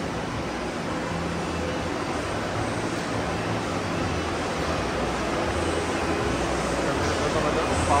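Steady background din with a low hum that comes and goes, and indistinct voices.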